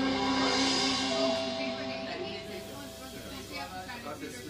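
A live jazz band's final held chord ringing out and fading away over the first two seconds, followed by faint voices talking.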